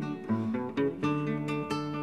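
Solo acoustic guitar playing chords in an instrumental bar between sung verses, with several chords struck in quick succession.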